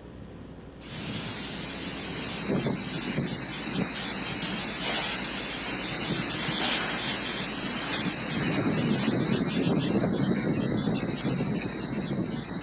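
Strong, gusty whirlwind wind rushing and buffeting a phone's microphone, a dense steady roar of noise that starts about a second in and surges in strength.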